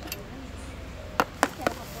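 Three sharp knocks of a kitchen utensil against a hard surface during food preparation, quickly one after another about a second in.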